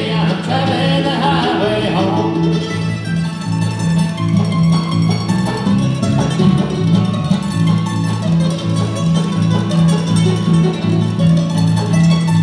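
Bluegrass band playing an instrumental break: a mandolin takes the lead, picked fast over strummed acoustic guitar and a steady bass line. A sung line fades out in the first couple of seconds.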